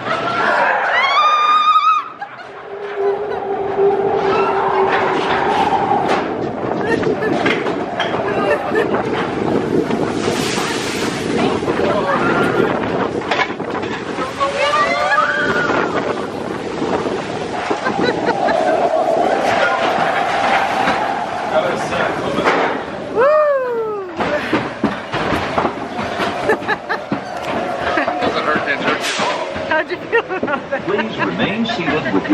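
Riders screaming and whooping on the Matterhorn Bobsleds roller coaster, over the rush of wind and the rumble of the bobsled running along its steel track. There is a rising shriek at the start, another about halfway through, and a long falling one about three-quarters of the way in.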